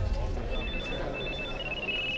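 Phone ringing with rapid short electronic beeps at two high pitches, starting about half a second in.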